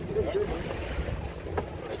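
Wind buffeting the microphone in a low rumble, with faint voices in the background and a single sharp click about one and a half seconds in.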